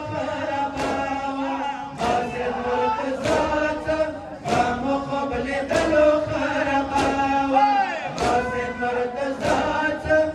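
Men chanting a mourning noha, with the sharp slap of many hands striking bare chests in unison (sinazani) about once every 1.2 seconds, keeping time with the chant.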